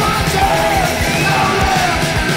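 Hardcore punk recording: distorted electric guitar, bass and fast drumming, with shouted lead vocals over the top.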